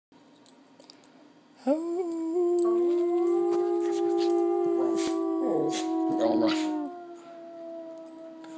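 A person's long, steady "ooo" howl starts about one and a half seconds in. About a second later a West Highland White Terrier joins in, howling along, and both hold their notes until shortly before the end.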